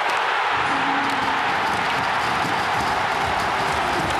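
Hockey arena crowd cheering a goal, a steady roar, with faint music underneath.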